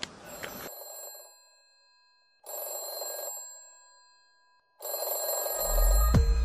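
Opening of an electronic pop song: a bright, ringing tone sounds three times, about two and a half seconds apart, each ring fading away, before a heavy bass and beat come in near the end.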